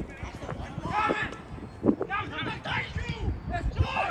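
Footballers shouting to each other on the pitch during a match, with a single thud a little under two seconds in.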